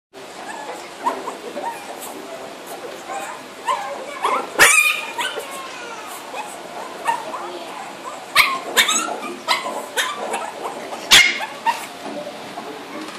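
Small dog yipping and barking, with the sharpest barks about four and a half seconds in, twice around eight and a half to nine seconds, and once near the end.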